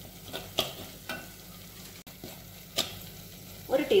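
Metal spoon stirring a thick rambutan pickle masala frying in oil in a pan, with a soft sizzle and occasional clicks of the spoon against the pan.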